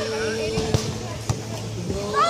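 Two sharp hand-on-ball hits of a beach volleyball rally, about half a second apart, over a steady held tone in the background.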